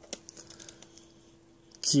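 Faint light clicks and taps of small plastic toy pieces handled in the fingers, several in the first second, over a faint steady hum.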